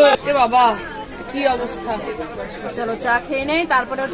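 Speech only: a woman talking, with other voices chattering around her.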